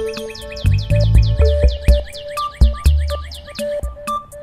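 Background music with a steady bass beat and held notes, overlaid with a rapid run of short, high, falling chirps that stops shortly before the end.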